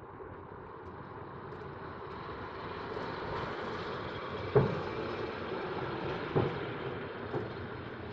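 Distant fireworks shells bursting: three sharp bangs, the loudest about four and a half seconds in and two weaker ones near six and seven seconds, over a steady rushing background noise.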